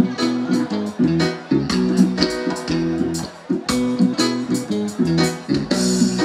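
Live reggae band playing an instrumental passage, with guitar chords over a steady drum beat.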